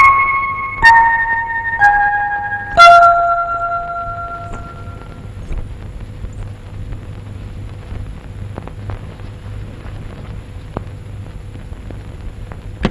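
Film background score: a descending run of struck, bell-like notes, five of them about a second apart, each ringing on, followed by a quieter low steady drone with a few faint clicks.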